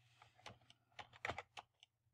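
Faint computer keyboard key presses, about six separate clicks over two seconds, over a quiet low hum.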